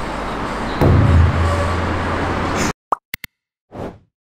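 Street traffic noise, joined about a second in by a low steady engine hum, cut off abruptly. Then come three short pops and a quick whoosh sound effect.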